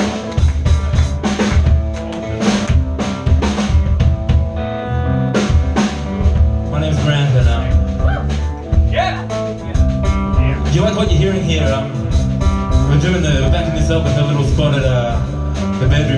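Live blues band playing: drum kit with snare and bass drum hits in a steady groove under electric bass and electric guitar.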